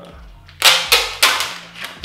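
A quick run of loud, sharp plastic clacks and knocks from the parts of a DJI Ronin-S gimbal being handled and fumbled in the hands. The clacks start about half a second in, and the loudest come in the first half-second of the run.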